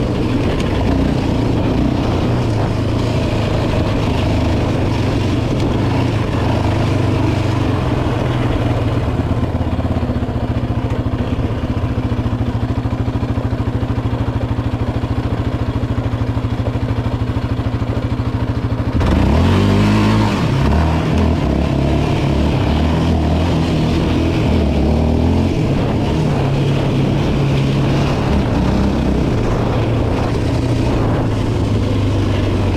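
Yamaha Raptor 700R quad's single-cylinder four-stroke engine running on a dirt trail. It holds a very steady note for about ten seconds, then revs up sharply about two-thirds of the way in and carries on with changing throttle.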